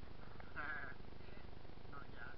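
A sheep bleating once, a short quavering call about half a second in, with a fainter call right at the end, over the steady low rumble of wind and tyres from the bicycle ride.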